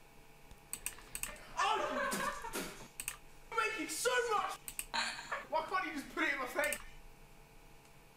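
Faint voices from a video playing back on a computer, with scattered clicks of a computer keyboard.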